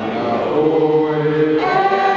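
A small group of voices singing together in long held notes. About halfway through they drop to a lower chord, then fuller, higher voices come back in near the end.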